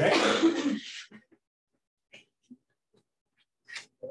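A person giving a harsh cough, or clearing their throat, once, about a second long.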